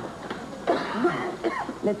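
A person coughing a few short times, starting a little under a second in, with a man's voice beginning to speak right at the end.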